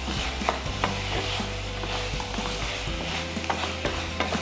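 A black spatula stirring a thick masala curry frying in a non-stick kadai: a steady sizzle, with scattered clicks and scrapes as the spatula knocks against the pan.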